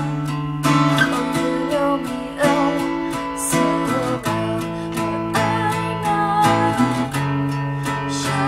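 Acoustic guitar strummed in sustained chords that change every second or so, with a woman singing over it.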